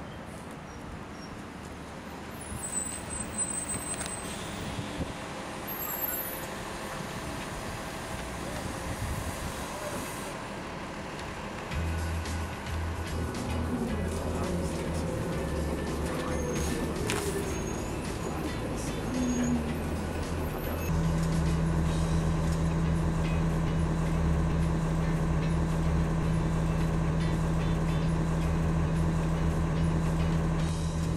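City bus engine running, first heard pulling up at the stop and then from inside the cabin; from about two-thirds of the way through it settles into a steady, louder low hum.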